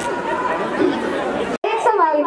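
Only speech: voices talking and chattering, with a momentary cut-out of all sound about one and a half seconds in.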